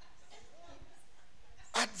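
Quiet hall room tone with faint, indistinct voices in the background, then a man's voice through a microphone starting near the end.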